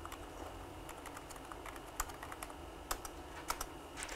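Typing on a computer keyboard: a run of light key taps, with a few sharper strikes in the second half.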